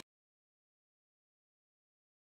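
Silence: the track has cut off and nothing else is heard.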